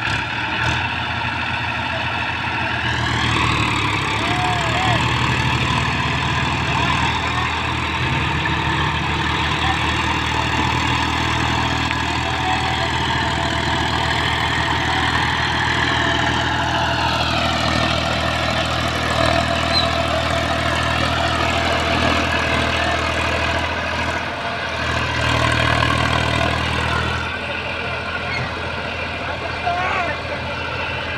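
Tractor diesel engines pulling hard: a Mahindra 365 DI 4WD mini tractor on tow ropes hauls a Massey Ferguson 7235 and its loaded trolley out of the soft ground where it is stuck. The revs climb about three seconds in, hold under load, and drop back after about seventeen seconds.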